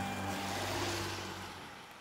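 A car passing on the road: a rush of tyre and wind noise that fades as it drives away, with faint held music notes dying out underneath.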